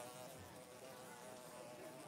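Faint buzzing of a housefly, its pitch wavering up and down.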